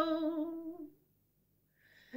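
An elderly woman's unaccompanied singing voice holds the last note of a ballad line with a slight waver and fades out within the first second. A short silence follows, and a faint breath is drawn just before the end.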